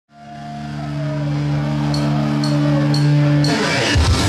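Live punk rock band starting a song: a held electric guitar chord fades in and rings, four even clicks half a second apart count in, and the full band with drums comes in about three and a half seconds in.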